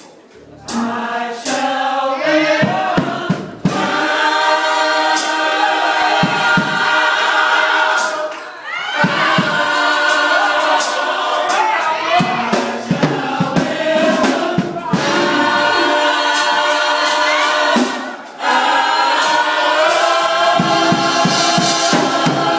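Gospel choir singing in long held phrases, broken by three short pauses.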